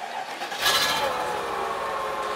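Mercedes-Benz W220 S500L's 5-litre V8 engine starting: a click, then about half a second in it fires and catches at once, running on steadily at idle.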